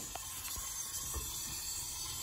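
Water from a hose running steadily into a sink, heard as a soft, even hiss, with a couple of faint knocks.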